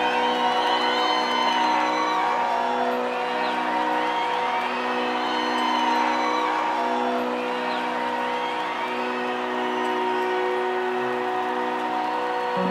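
Live band holding a sustained, steady chord while a concert crowd cheers and whistles over it, with many short rising-and-falling whoops.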